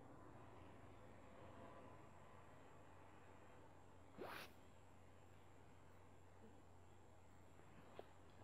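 Near silence: low room hum, broken once about four seconds in by a brief faint swish.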